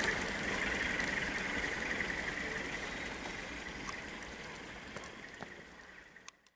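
IR382 Sofia–Moscow passenger train rolling away over the station tracks, a steady wheel-on-rail hiss and rumble fading out, with a few faint clicks near the end.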